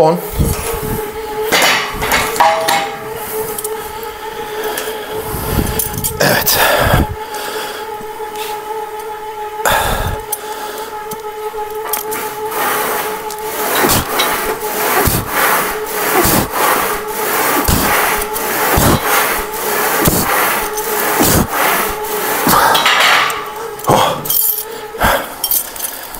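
Smith machine loaded with weight plates: plates clanking onto the bar near the start, then the bar knocking and sliding along its guide rods through a set of bench press reps, about one knock a second in the second half, over a steady hum.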